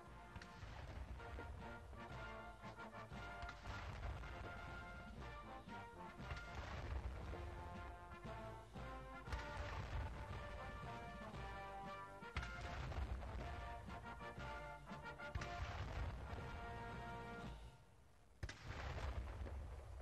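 A military band plays a march while ceremonial saluting cannons fire a gun salute, one sharp boom about every three seconds over the music.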